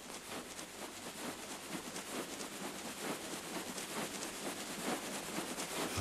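Dense, soft crackling and pattering noise that slowly grows louder, opening a film-score track before the voice comes in.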